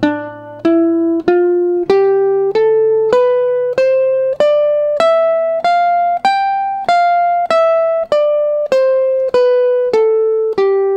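Archtop electric guitar playing the C major scale one note at a time from E, the third of the key, at an even pace of about one and a half notes a second. The line climbs to its top note around six seconds in and then comes back down.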